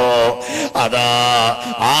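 A man chanting in a melodic, sing-song voice, holding two long notes, as in the sung passages of an Islamic devotional talk.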